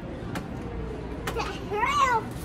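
Store background noise with a few light clicks, then a child's short high-pitched vocalization near the end that rises and falls in pitch.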